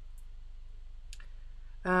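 Steady low hum with two small clicks, a very faint one near the start and a sharper one about a second in, then a woman says "um" near the end.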